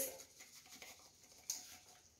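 Spice shaken from a shaker bottle onto a raw chicken, a faint patter of granules, with one brief, sharper shake about one and a half seconds in.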